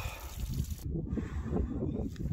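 Wind buffeting a phone microphone, with the trickle of a small hillside spring under it for the first second. The trickle cuts off abruptly, leaving the wind rumble alone.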